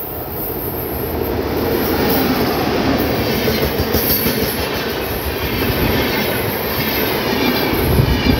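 A WAP-7 electric locomotive hauling an express passenger train passes close by at speed. Wheels on rail grow louder over the first couple of seconds as it approaches, then come a steady, loud rush and wheel clatter as the locomotive and coaches go past.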